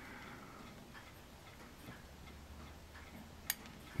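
A clock ticking faintly, with one sharp click about three and a half seconds in as the metal tweezers slip off a tiny plastic model part and send it flying.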